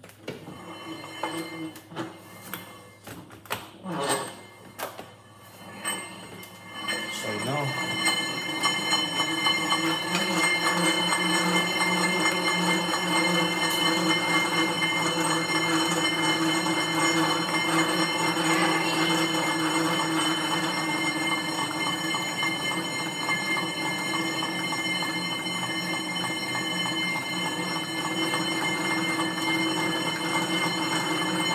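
Stationary exercise bike's flywheel whirring steadily with a whine as it is pedalled hard, starting about seven seconds in after a few clicks and knocks as the rider gets going.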